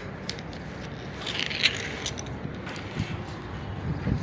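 Rescue rope being hauled through a rope-grab and pulley haul system: scattered sharp clicks and a brief rasp of rope about a second and a half in, over a steady outdoor background.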